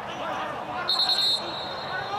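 A referee's whistle blown once, about a second in: a short, high, steady blast that stops play. Faint shouts from the players on the pitch sit under it.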